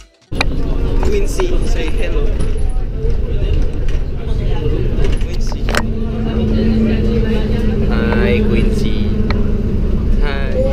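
Cabin of an airport apron shuttle bus under way: a loud, steady low engine and road rumble, with passengers talking in the background. A steady hum joins the rumble about six seconds in.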